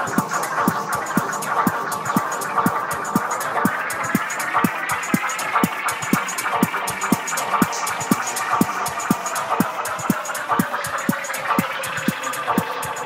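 Tech house DJ mix: a steady four-on-the-floor kick drum about twice a second with hi-hats, under a synth tone that glides up about four seconds in and splits into rising and falling sweeps near the end.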